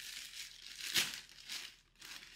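Plastic poly mailer bag crinkling and rustling as it is pulled open by hand, with the loudest crackle about a second in.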